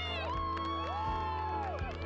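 Background music with a steady low bass, with a group of young women cheering and whooping over it, their voices rising and falling in long excited calls.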